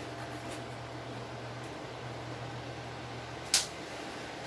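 A steady low hum of room noise, with one sharp knock about three and a half seconds in as the cardboard boxes are handled.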